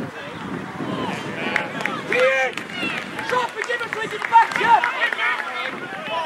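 Several voices shouting and calling out across the pitch, overlapping in short bursts with no clear words, loudest a couple of seconds in and again near the end.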